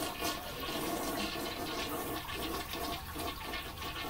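Water running steadily in the background, a continuous rushing hiss.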